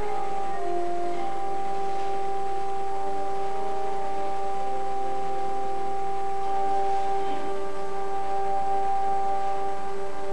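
Church organ playing a few short notes, then holding a long, steady chord that does not fade.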